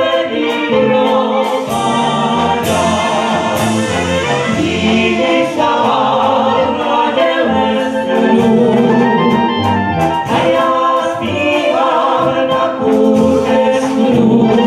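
A Slovácko brass band (dechová hudba) with tuba, trombones, trumpets and drum kit playing a song while several male and female singers sing together into microphones. Cymbal crashes ring out about three seconds in.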